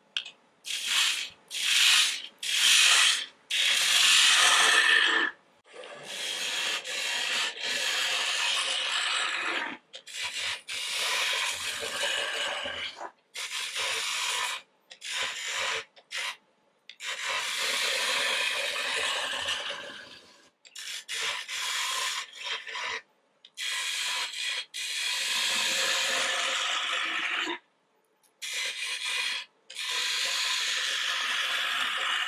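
A turning gouge cutting green, spalted aspen spinning on a wood lathe, taking a run of passes along the outside of a vase blank. Each pass is a coarse shaving scrape, from under a second to a few seconds long, with short quiet gaps between them. The first few passes are the loudest.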